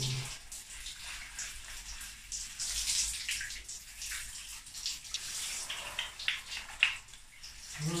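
Shower water splashing in a tiled stall while hands scrub wet hair, an uneven patter of splashes and drips with one sharper splash shortly before the end.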